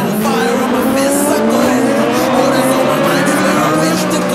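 Autocross buggy engines revving hard, several pitches rising and falling together, with background music underneath.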